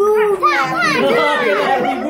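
Several children's voices calling out and talking over one another, high-pitched and overlapping.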